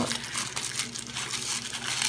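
Tissue paper rustling and crinkling softly as fingers pull apart and fluff the layers of a paper flower.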